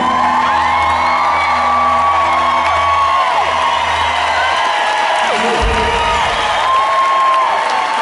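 A live rock band with electric guitars and keyboards holds the closing chord of a song, the low end cutting off after a last low hit about five and a half seconds in. Over it, a crowd cheers and whoops.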